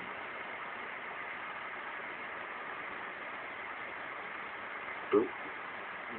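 Steady, even background hiss with no rhythm or change, broken about five seconds in by a man's short 'oop'.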